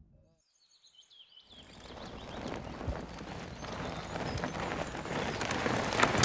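A few bird chirps as the sound fades in, then a rush of noise that builds steadily louder with scattered clicks and ticks: a mountain bike approaching along a dirt trail.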